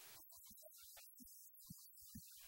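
Near silence: a faint hiss that drops out and comes back, with scattered short, dull low blips.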